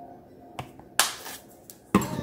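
Handling of a nearly empty small bottle of roasted sesame oil: a faint click, a short rasping burst about a second in that quickly fades, and a sharp click near the end as the bottle comes down onto the counter.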